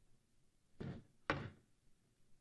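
Two knocks about half a second apart, from the wooden lectern being handled close to its microphone.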